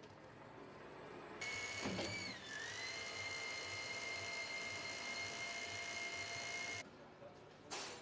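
Jacob Müller SWT-800 seat-belt winding machine running: a steady high motor whine over a hiss, which starts about a second and a half in, dips briefly in pitch before settling, and then stops abruptly near the end.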